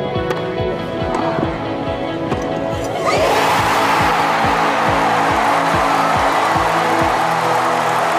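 Background music with a steady beat. About three seconds in, a tennis crowd erupts in loud cheering that carries on over the music, greeting the winning point of the match.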